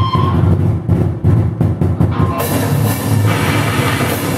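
Drum kit played fast and loud, heard up close, with a live band; rapid strokes on the drums, with cymbals washing in a little past halfway.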